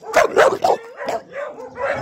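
Dog barking: a quick run of sharp barks in the first second, the loudest near the start, followed by softer barks.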